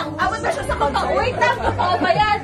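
Several people talking over one another: lively group chatter.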